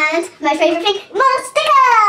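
A young girl singing wordlessly in excitement: three high sung notes, the last one held and sliding down in pitch.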